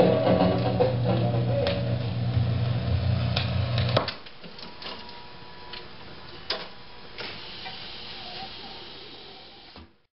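The last of a record played through a 1962 Rock-Ola jukebox, cutting off abruptly about four seconds in. After that the jukebox's record-changing mechanism runs with a low hum and a few sharp clicks and clunks as it cycles at the end of the record.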